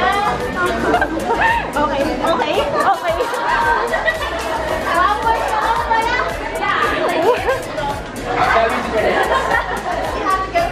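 Several people talking over one another in a room, with background music underneath.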